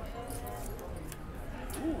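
Casino table background of murmuring voices, with a few faint light clicks and taps as the blackjack dealer deals herself two more cards; a short 'ooh' near the end.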